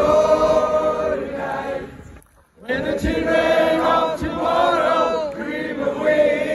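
Concert crowd singing a melody together, many voices at once. There is a short break a little over two seconds in, then the singing picks up again.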